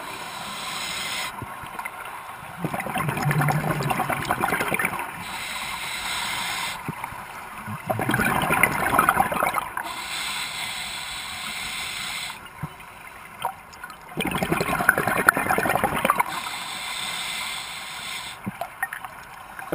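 Scuba diver breathing through a regulator underwater: a hiss on each breath in, then a long burst of bubbling exhaust on each breath out. Three exhalations come about every five to six seconds.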